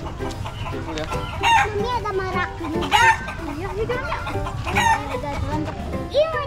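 Long-feathered chickens clucking and calling, with three sharp, louder calls about a second and a half, three and five seconds in.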